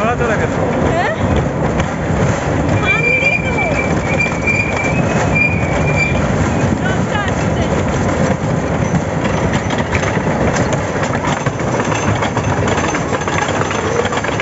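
Roller coaster train rattling along its track as it climbs the lift hill, with a high squeal a few seconds in and riders' voices over it.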